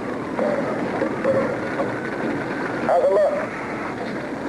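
Indistinct, muffled voices over a steady rushing background noise, with a brief louder vocal sound about three seconds in.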